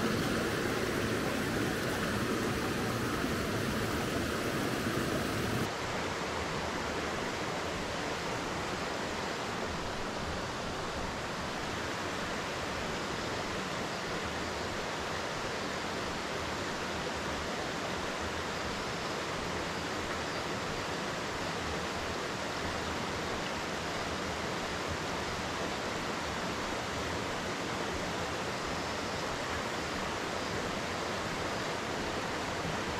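Steady rush of flowing river water. About six seconds in the sound changes abruptly to a slightly quieter, duller rush.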